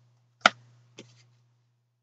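Two short, sharp clicks about half a second apart, the second fainter, over a faint low hum that fades out.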